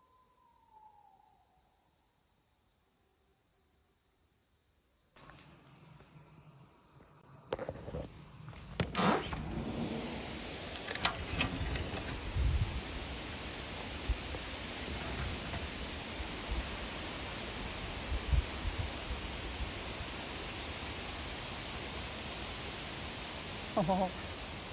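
Near silence for about five seconds, then a steady, even outdoor hiss with a few sharp clicks and knocks in its first seconds.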